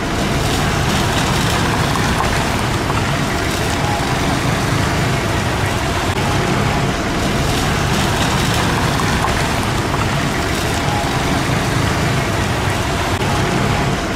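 Slow street traffic: engines of cars, pickups and a truck running steadily, with tyre noise over a rough, potholed road surface.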